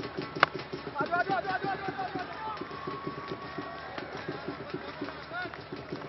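A single sharp crack of a cricket bat striking the ball, about half a second in. A voice calls out briefly after it, over steady background stadium noise.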